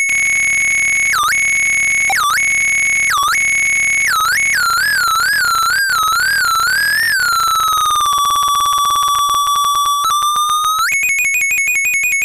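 Circuit-bent toy typewriter's sound chip putting out a loud, high, buzzy electronic tone that swoops down and back up about once a second, then wobbles faster. Partway through it glides down to about half its pitch, holds there, and jumps back up to the high note near the end, as its bent pitch control is worked.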